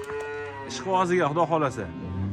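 Cattle mooing: one long, steady call near the start, followed by more wavering lowing.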